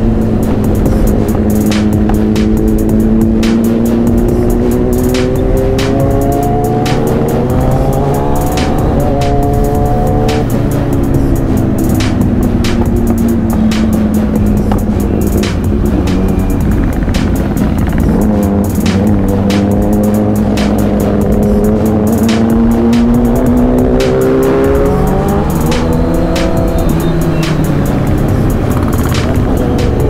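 Motorcycle engine under way, its pitch climbing and falling several times as the rider accelerates and eases off, mixed with a hip-hop beat of background music.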